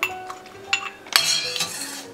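Metal ladle clinking against a stainless steel pot while scooping out liquid: a few sharp clinks, the loudest a little past halfway, with a short splashy hiss after it. Soft background music plays underneath.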